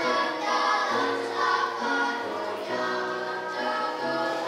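A children's choir singing in unison, holding long notes, over a steady instrumental accompaniment with low bass notes that change about once a second.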